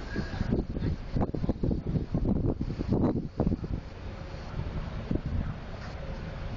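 Wind buffeting the camera microphone in irregular low gusts, strongest in the first half and easing after about three and a half seconds into a steadier low rumble.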